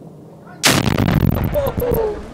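A demolition charge exploding close by: one sudden, very loud blast just over half a second in, followed by a rumbling tail. Those present take it for a sympathetic detonation.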